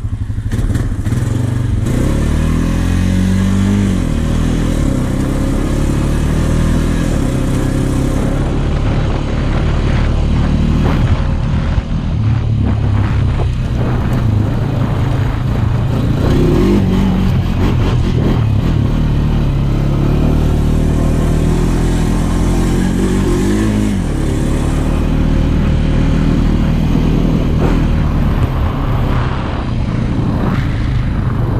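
Honda Rancher 420 ATV's single-cylinder four-stroke engine running under way, its pitch rising and falling several times as the throttle is opened and eased off.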